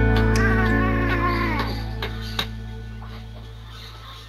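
A cat meowing once, a drawn-out call lasting over a second that falls in pitch at the end, over soft background music that fades out.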